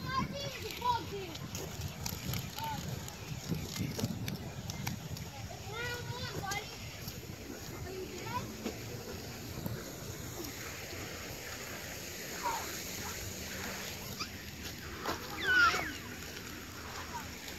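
Children's voices calling and shrieking in the background, with the loudest shriek near the end. Under them runs the scuffing crunch of footsteps through wood-chip mulch.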